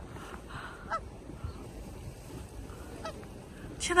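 Two short rising waterfowl calls, the first about a second in and a fainter one about three seconds in, over a faint steady outdoor background.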